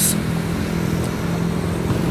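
Motor scooter engine running steadily while riding along a street, with road and traffic noise around it. A brief sharp noise comes right at the start.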